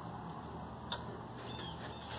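Quiet room tone with a low steady hum and a single short click a little before halfway through.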